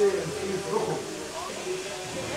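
Faint background voices over a steady hum.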